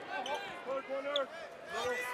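A basketball being dribbled on a hardwood court during a game, with voices in the arena.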